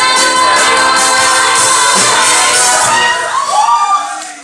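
Cast of a stage musical singing together over accompaniment, holding long notes, with one voice sweeping up and back down near the end.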